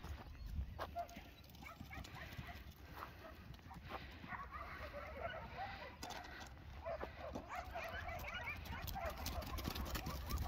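Faint, busy chatter of many short animal calls in the background, growing thicker from about four seconds in, over a steady low rumble.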